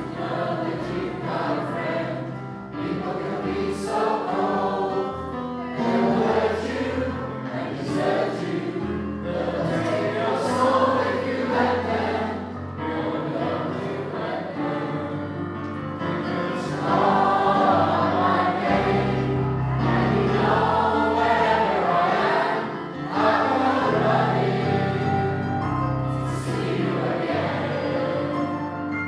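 A mixed choir of men's and women's voices singing a song together, accompanied by an electronic keyboard holding sustained bass notes.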